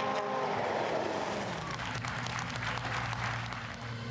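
Spectators applauding at the stage finish, an even wash of clapping. A rally car's steady engine note fades out within the first second.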